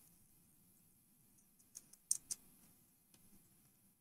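Near silence broken by a few faint, short computer keyboard key clicks about halfway through, as a terminal command is typed and entered.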